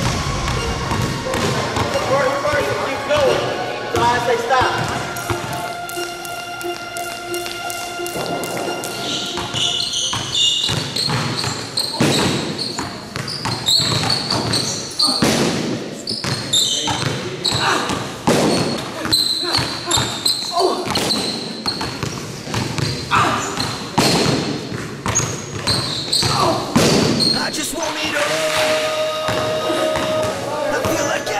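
A basketball dribbled hard and fast on a gym floor, many quick bounces in a row, under a music track.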